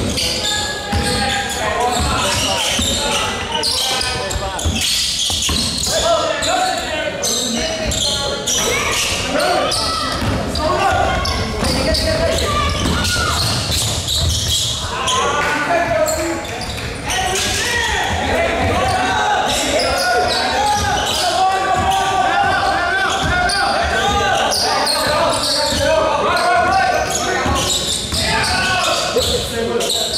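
Basketball being dribbled and bouncing on a gym floor, with a steady babble of players' and spectators' voices, echoing in a large hall.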